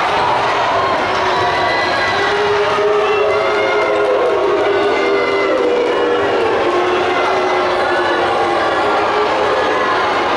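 Loud, steady din of a crowd in a basketball gym: many voices overlapping, with long held tones running through it.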